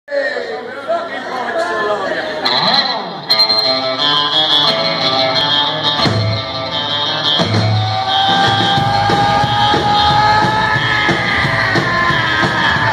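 A live rockabilly band starts a number: electric and acoustic guitars, upright double bass and drums, with a voice shouting over the opening couple of seconds before the full band comes in about three seconds in. Near the end a long held note rises slightly in pitch.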